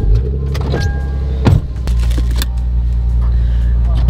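Steady low rumble of a car heard from inside its cabin, with a sharp click about one and a half seconds in.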